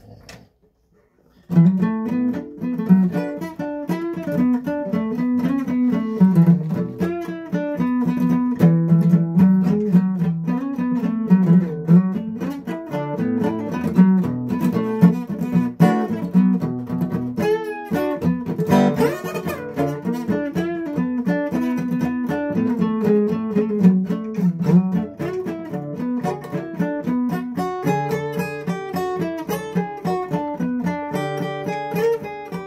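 Acoustic guitar played after a brief quiet start about a second and a half in: a steady run of plucked chords and notes, with one short break a little past halfway.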